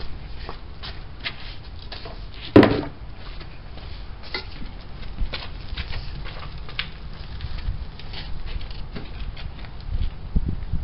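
Scattered knocks, scrapes and rustles of work with a straw-laden wheelbarrow, with one loud sharp knock about two and a half seconds in.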